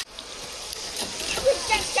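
Voices of several people in the open air: a couple of short calls in the second half and a laugh at the very end, over a faint steady high hiss.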